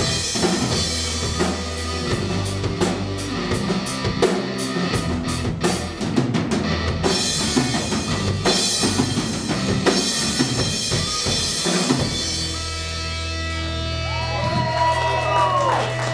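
Folk-rock band playing live: drum kit, electric bass and guitar in an instrumental passage, with the drumming stopping about twelve seconds in as a final chord is held and rings out.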